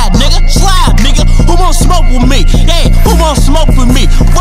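Hip hop track: rapped vocals over a heavy, repeating bass beat.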